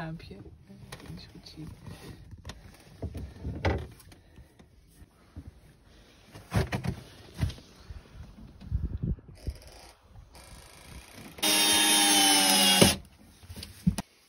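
Scattered knocks and bumps of handling work. Near the end a small electric motor, a power tool, runs loudly at one steady pitch for about a second and a half.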